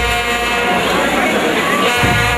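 A voice holding a drawn-out, wavering note over a brass band, while the band's drums and bass drop out; they come back in right after.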